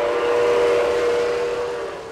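Lionel model train whistle sounding one long steady chord with a breathy hiss, fading out near the end. On Lionel engines the whistle is in most cases a digital recording of the real locomotive's whistle.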